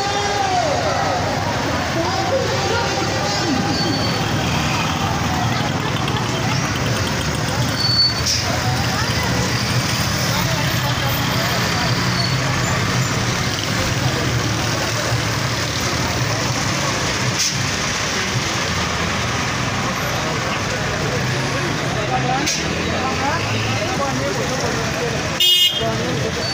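Street traffic noise: motorcycle and auto-rickshaw engines running steadily, with a few short horn toots and the voices of a walking crowd. A short rattle comes near the end.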